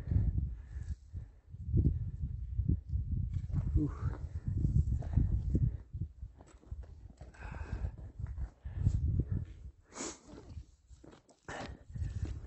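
Wind buffeting the camera microphone in irregular low gusts, with a hiker's heavy breathing after a steep, loose climb at high altitude. Near the end come a few crunching footsteps on loose rock.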